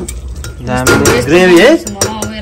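Steel ladle clinking and scraping against an aluminium pressure cooker as thick mutton curry is stirred. A person's voice rises and falls over it, loudest in the second half.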